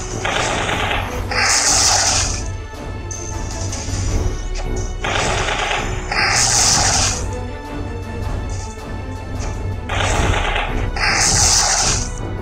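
Background music from the Choki Choki BoBoiBoy Card 3D augmented-reality battle game, with a two-part crashing attack sound effect repeating three times about five seconds apart, the second part brighter and hissier.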